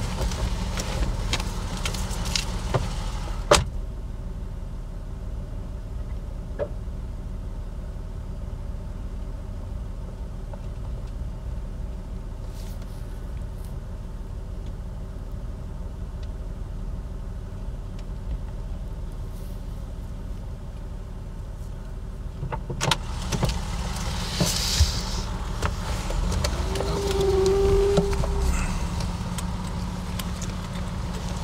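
Car engine idling, heard from inside the cabin as a steady low rumble. A car door shuts with a sharp click about three and a half seconds in, and door and handling knocks and rustling follow in the last several seconds.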